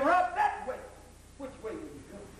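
Speech only: a voice speaking loudly in short, emphatic phrases, with a lull in the middle.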